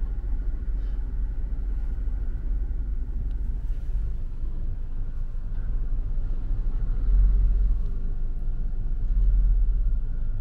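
Low, steady rumble of vehicles heard from inside a car's cabin as it crawls past heavy dump trucks, getting louder twice in the second half as the truck bodies pass close alongside.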